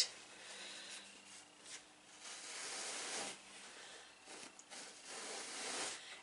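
Soft rustling of fusible cotton batting being unfolded and shaken out, coming in a few faint swells.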